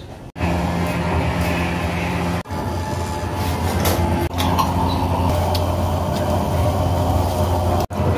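A small electric blower motor hums steadily at a low pitch. The hum drops out for an instant three times, near the start, about two and a half seconds in and near the end.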